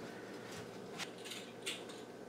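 Wheel pizza cutter rolling through a thin pizza crust on a metal baking tray: a few faint, brief scratches and crunches about a second in and again near the end.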